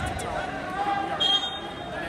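Background crowd voices and chatter in a gymnasium, with a short, steady high-pitched beep about a second and a quarter in.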